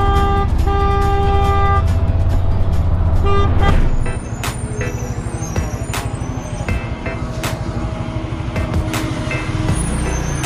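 A vehicle horn honks twice, a short blast and then a longer one of over a second, with a brief toot a little later, over a motorcycle's engine and road noise. About four seconds in this gives way to quieter city traffic noise with a bus close by.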